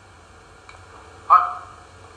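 Low background hiss, with one short syllable from a man's voice about a second and a third in.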